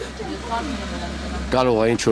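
A low, steady engine rumble from a motor vehicle nearby, heard in a pause in a man's speech; his voice comes back in about a second and a half in.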